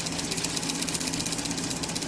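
Ignition-system training rig running: a rapid, even ticking over a steady low hum.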